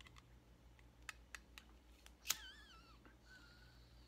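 Faint clicks of a lighter being struck, a few times about a quarter second apart and once more, louder, just past two seconds in, as a tobacco pipe is lit. A brief wavering squeak follows the loudest click, and then comes a faint steady hiss of the flame.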